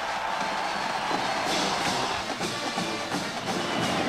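Stadium band music over a crowd cheering a touchdown, a steady dense wash of sound with scattered sharp strikes.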